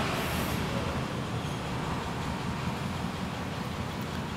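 Steady background noise, a low rumble with hiss and no distinct events.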